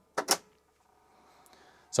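SyQuest 88 MB cartridge being pushed into its drive: a quick pair of sharp plastic clacks as it slides in and seats, then near silence.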